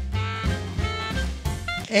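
Background music: an upbeat swing-style jazz tune with a steady bass line.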